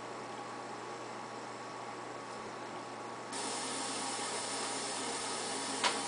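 Steady hiss of room tone and recording noise with a faint low hum; the hiss gets louder about halfway through, and there is a short click near the end.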